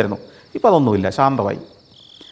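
Crickets chirping: a steady, fast-pulsing high trill runs under a short spoken phrase and carries on alone near the end.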